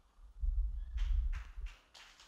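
Handling noise on a handheld microphone as the person holding it moves: low thuds and rumble, with a few short rustling scrapes about a second in.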